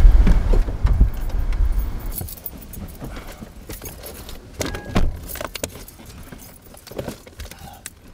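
Wind rumbling on the microphone for about the first two seconds. Then, inside the car, scattered light clicks and clatter from people settling in, with a sharper knock about five seconds in.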